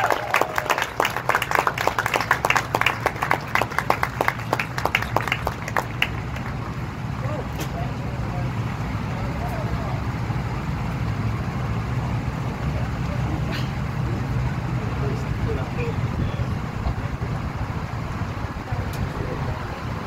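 A small crowd applauding for about six seconds, the clapping then dying away into scattered voices over a steady low rumble.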